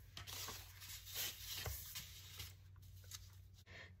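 Faint rustling and sliding of paper pieces being handled and positioned on a cutting mat, in soft irregular bursts.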